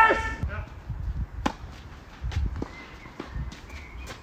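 A short vocal cry right at the start, then a tennis ball struck sharply with a racket about a second and a half in, followed by a few fainter knocks from the ball on the clay court.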